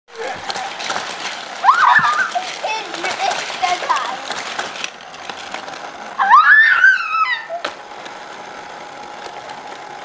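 Children's high-pitched voices calling out twice, over light clicking and clatter from a plastic Hot Wheels track set being handled.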